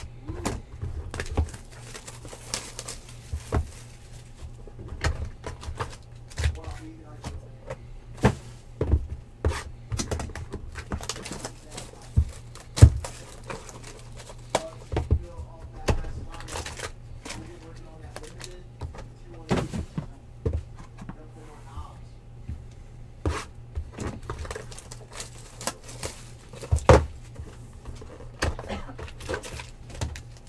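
Cardboard hobby boxes of trading cards being handled and set down on a table: an irregular string of sharp knocks and thumps, the loudest a little before halfway, over a low steady hum.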